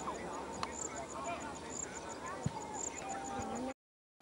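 Live sound of an amateur football match: players shouting to each other on the pitch, with a couple of sharp thumps of the ball being kicked and a fast, high-pitched chirping behind. The sound cuts out abruptly near the end.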